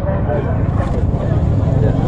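Voices of people talking nearby, faint and broken, over a steady low rumble.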